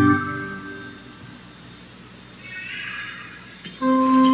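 Pipe organ chord closing the sung antiphon and cutting off just after the start, leaving a quiet reverberant pause. Near the end the organ comes back in with new sustained chords, starting a hymn introduction. A faint steady high-pitched whine runs underneath throughout.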